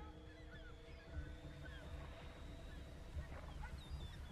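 Faint background ambience: a few low steady tones held throughout, with scattered short chirps over them.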